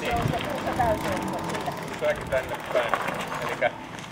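People talking in the background, over a low rumble.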